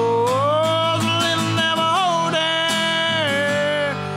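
A man's voice holding one long sung note that glides up near the start and then stays level, over a strummed acoustic guitar, in a country song.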